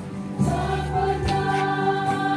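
A choir singing a church hymn in long, held notes, a little louder from about half a second in.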